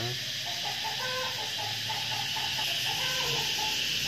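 Short, repeated calls, like a bird's or farm animal's, over a steady hiss.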